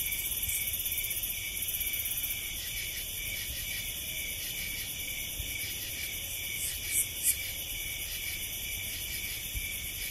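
Field recording of several species of singing insects calling at once, a steady chorus of high-pitched buzzes and trills at several pitches layered over one another. Two short louder notes stand out about seven seconds in.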